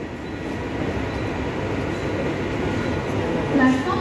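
Mumbai suburban electric local train (Central Railway EMU) pulling into a platform, a steady rumble that grows gently louder as it approaches.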